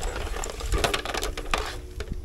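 Irregular rapid clicking and rattling of hard plastic as a plastic outdoor extension-cord cover box is handled.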